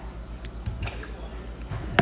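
Faint handling sounds, a few light clicks and rustles, as a hand moves a cut chunk of pineapple, over a steady low hum.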